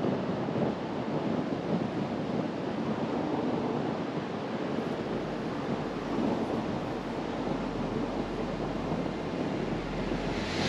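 Steady wind rush over the microphone of a camera on a moving motorcycle.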